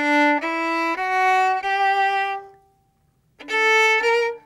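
Solo violin played slowly with the bow: separate sustained notes about half a second each, alternating and then stepping upward in a scale figure, the last note held and dying away. After a short pause a new phrase starts near the end.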